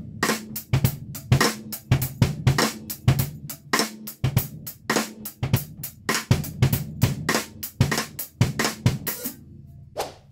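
Drum kit groove with cross-stick clicks on the snare on two and four, each followed late by a stroke from the other stick in a wide, lazy flam, over bass drum and cymbals. The playing stops about nine seconds in.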